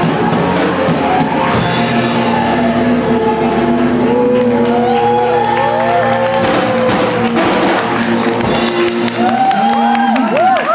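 Live rock band holding a sustained chord, with notes bending up and down in pitch over it from about four seconds in; the low end drops away near the end as the song winds down.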